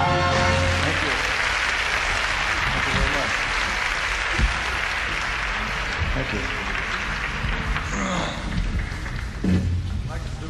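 A live audience applauding after a song's final held note cuts off. The applause slowly fades, with a short high whistle about eight seconds in.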